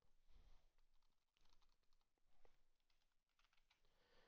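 Very faint computer keyboard typing: an irregular scatter of light key clicks.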